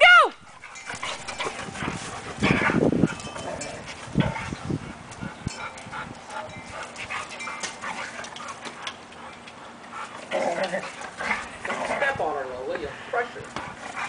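Two dogs play-fighting on grass: irregular scuffles and dog vocal noises, loudest about two and a half seconds in, with a string of short, high, wavering cries in the last few seconds.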